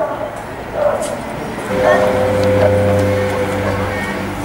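Scattered voices of an outdoor crowd, then about a second and a half in a steady sustained music chord starts and is held.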